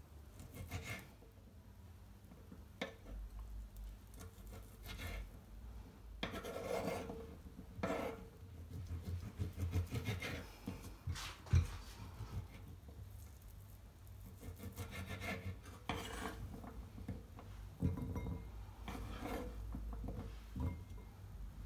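Small knife cutting and dicing a salami on a wooden cutting board: irregular runs of taps against the wood, with the rasp of the blade drawn through the sausage between them.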